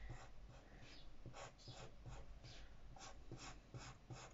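Red felt-tip marker rubbing on paper in a string of short, quick strokes as it colours in the thick downstrokes of looped lettering. Faint.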